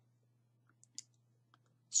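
Quiet pause with a steady low electrical hum, and a single faint sharp click about a second in, preceded by a fainter tick or two.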